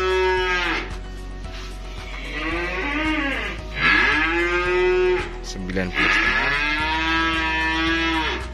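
Young cattle mooing repeatedly: a long moo fading out just under a second in, a short one around three seconds, then two long drawn-out moos from about four and about six seconds in.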